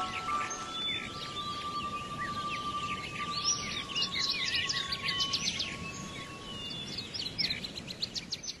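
Birds chirping and twittering in quick, short calls, thickest from about three seconds in, over a single held musical note that fades away near the end.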